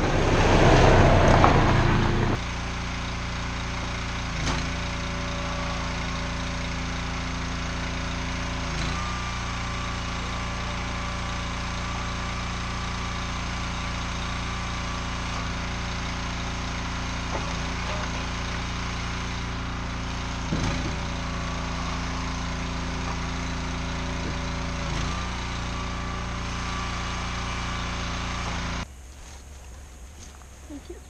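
Polaris Ranger side-by-side driving past, loud for the first two seconds or so, then its engine idling steadily with a few brief knocks. The engine sound stops abruptly about a second before the end.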